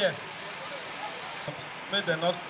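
A man's voice over a microphone and loudspeakers trails off at the start. After about a second and a half of steady outdoor background noise, he speaks again near the end.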